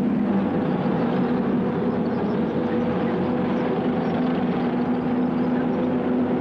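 Tank engines running in a steady, continuous drone, as a column of armoured vehicles moves.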